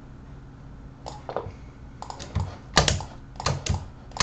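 Computer keyboard keys tapped in a quick irregular series, about eight presses starting about a second in, over a steady low hum.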